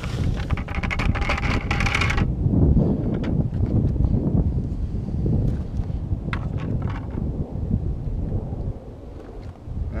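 Gravel poured from a plastic bucket onto a mesh classifier screen, a dense rattle that stops suddenly about two seconds in. After that, wind rumbles on the microphone, with a few scattered handling clicks.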